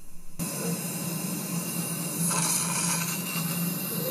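Steady hiss with a constant low hum from dental operatory equipment running chairside, beginning abruptly just after the start. A brighter rush comes about two and a half seconds in.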